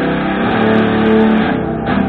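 Electric guitar played through an amplifier, holding a sustained note for about a second before the sound thins out near the end.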